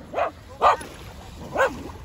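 A dog giving three short barks, the second about half a second after the first and the third about a second later.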